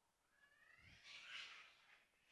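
A cat meowing faintly: one drawn-out call that rises in pitch and turns into a rough, breathy tail.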